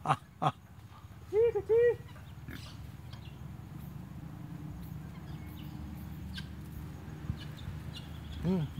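Two sharp clicks, then a man's voice calling out twice, each a short, high call that rises and falls. After that only a steady low outdoor hum and hiss remains.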